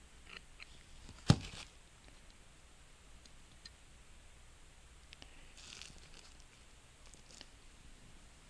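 One sharp metallic click about a second in, as a flathead screwdriver is twisted against a stuck end plug in the valve bore of a 2002 Honda Odyssey automatic transmission's aluminium valve body. Otherwise quiet, with a few faint clicks and a brief crinkle of plastic sheeting under the gloved hands.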